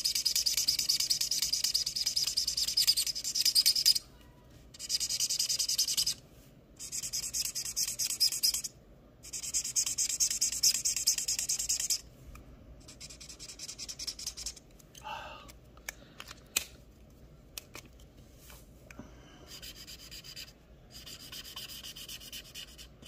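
Marker pen scribbling back and forth on paper, colouring in the squares of a printed chart, in spells of two to three seconds with short breaks. From about halfway the strokes turn fainter and sparser, with small ticks of the pen.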